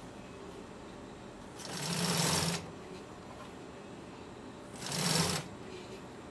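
Consew industrial sewing machine stitching black vinyl in two short runs: one about two seconds in lasting about a second, and a shorter one near the end.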